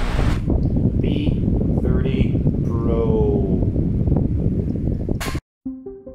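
Wind from an electric desk fan held close, buffeting a Rode VideoMicro on-camera microphone fitted with a furry dead-cat windscreen: a heavy, steady low rumble. It cuts off suddenly near the end.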